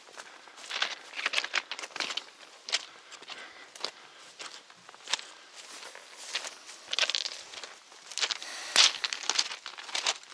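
Footsteps crunching on the crushed-stone ballast of a railway track: an irregular run of gravel crunches, with a louder one near the end.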